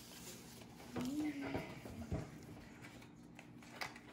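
Playing cards being handled and set down on a wooden table, a few light taps, with a short hum from a voice about a second in.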